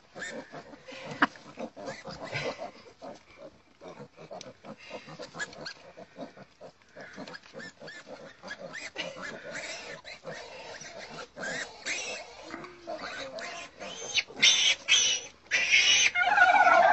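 A litter of piglets grunting and squealing as they crowd around and nose at something, with a louder run of shrill squeals near the end.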